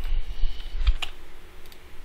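Typing on a computer keyboard: a few scattered keystrokes, with dull low thumps in the first second.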